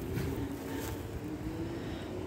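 Steady outdoor background noise with a faint, steady low hum of a distant engine.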